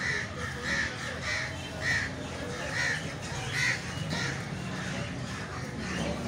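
A bird giving a string of about seven short, harsh calls, roughly one every half second, that stop about four seconds in.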